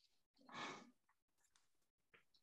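Near silence, with one soft, short breathy exhale like a sigh about half a second in.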